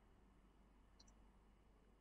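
Near silence: room tone, with a faint click about a second in.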